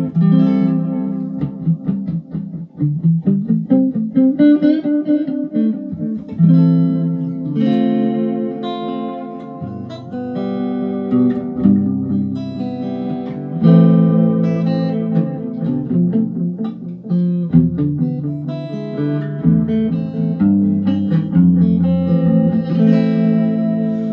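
Guitar played through the MP Custom FX Whole Echo Story analogue reverb and modulated delay pedal, with a little reverb, delay and chorus on it. Picked notes and strummed chords ring on into one another.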